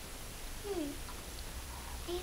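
A child's short, gliding "hmm" while thinking, over quiet classroom room tone.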